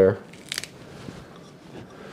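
Hands rustling fresh cilantro leaves and pressing them into a plastic food processor bowl, with one brief crisp rustle about half a second in and quieter handling after.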